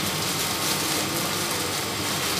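Steady rushing background noise, with light rustling of a plastic courier bag being handled and torn open.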